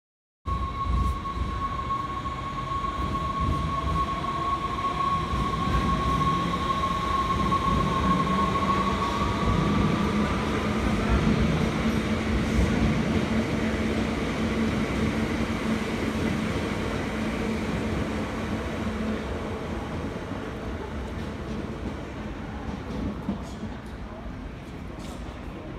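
Electric passenger train running along a station platform: a steady high whine with a slight upward bend about ten seconds in, over the rumble of the wheels on the rails. It is loudest in the middle and fades gradually toward the end.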